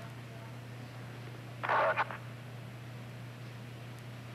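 Steady low hum and hiss of the air-to-ground radio feed, broken about halfway through by a brief half-second burst of clipped radio transmission.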